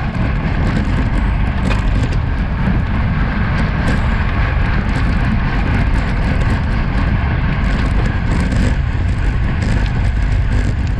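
Steady rush of wind over a bike-mounted action camera's microphone, mixed with road-bike tyres rolling on coarse asphalt, as the bike speeds up to about 49 km/h.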